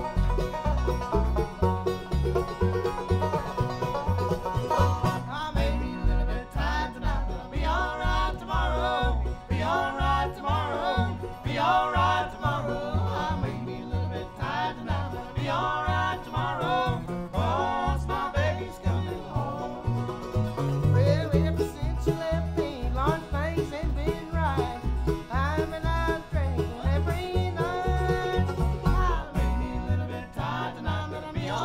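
Bluegrass band playing live: banjo, mandolin, acoustic guitar and plucked upright bass keeping a steady beat. Singing comes in about six seconds in, with several voices singing together round one microphone.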